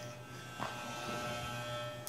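Steady low electrical hum with a faint buzz, and a soft tap about half a second in.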